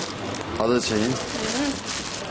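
A person's voice making wordless, hummed sounds that rise and fall in pitch, with a brief clatter of something handled about a third of the way in.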